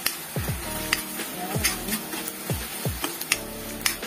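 Background music with a beat of repeated falling bass notes, over the faint sizzle of tuna and pesto frying in a wok and the clicks of a metal spatula against the pan.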